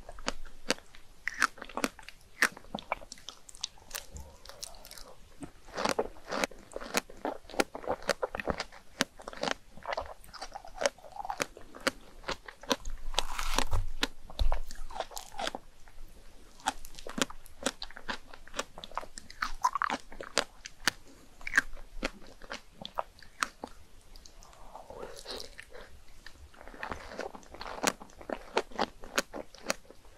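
Close-miked eating of chocolate whipped cream and a fresh strawberry: a dense, irregular run of wet mouth clicks and chewing, with a louder stretch of chewing about thirteen seconds in.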